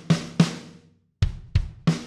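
Sampled snare drum from Logic Pro X's Drum Kit Designer, struck twice in quick succession, each hit ringing briefly with the dampening turned up. After a short pause, about a second in, the virtual kit starts a groove with kick drum and snare.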